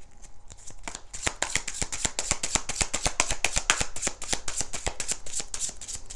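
A deck of tarot cards being shuffled by hand: a rapid, even run of soft card slaps and riffling that starts about a second in.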